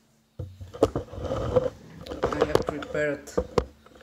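Clicks and light knocks of small metal lock tools being handled and set down on a paper-covered table, starting about half a second in, with a brief bit of voice near the end.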